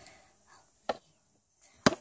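Two sharp clicks about a second apart, the second much louder: a small hard plastic toy figure being handled against fingers, nails or a hard surface.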